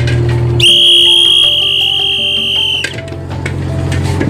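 One loud, steady, high-pitched whistle lasting about two seconds, starting just under a second in. It sounds over the low, steady hum of the fishing boat's engine.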